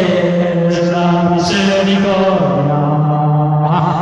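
A man singing an evangelical hymn, apparently unaccompanied, in long drawn-out notes: one pitch held for over two seconds, then a step lower about two and a half seconds in, the pitch wavering near the end.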